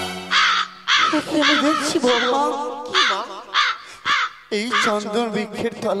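A crow cawing over and over, about two harsh caws a second, as music dies away in the first second.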